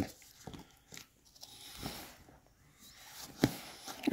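Quiet handling noises: a hand rubbing and tapping on the fabric dust cover under an upholstered chair seat, with faint scrapes and small clicks and one sharper knock about three and a half seconds in.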